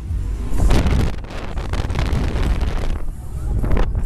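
Rushing wind buffets the microphone as a rider swings through the air at speed on a Dive Bomber fairground thrill ride, rising and falling in gusts, with fairground music behind it.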